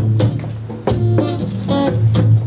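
Steel-string acoustic guitar strummed in a choppy reggae rhythm, a few sharp chord strokes ringing between them.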